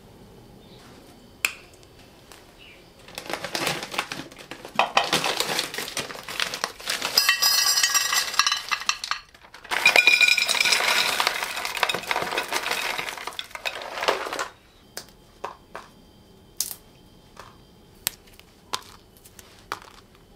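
Kitchen prep clatter of clams and enamel containers: rustling, then a dense clatter with clinks of shells and containers that runs for several seconds, breaks briefly, and resumes louder. In the last few seconds there are only a few separate light taps.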